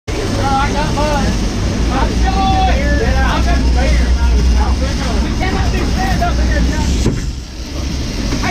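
A sportfishing boat's engines running underway, a steady low rumble, with people's voices calling out over it. The level dips briefly near the end.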